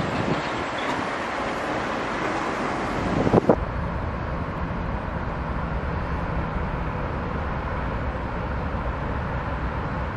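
Outdoor location sound: wind buffeting the microphone, with a stronger gust about three seconds in. It then switches abruptly to a steady low rumble of city traffic.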